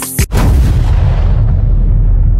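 A single very loud boom about a third of a second in, like a heavy gunshot or explosion. Its sharp top fades over about a second into a steady deep rumble.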